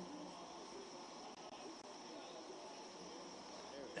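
Faint room tone in a meeting hall: a steady, high-pitched hiss with no distinct sounds.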